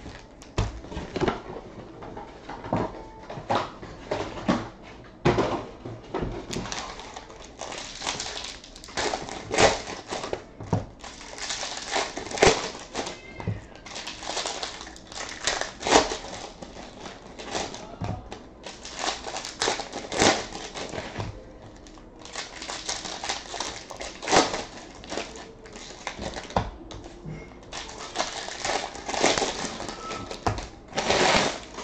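Foil trading-card pack wrappers crinkling and tearing as packs are opened by hand, with the cards inside being handled: a dense, irregular run of sharp crackles and snaps.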